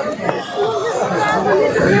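People talking, several voices chattering at once.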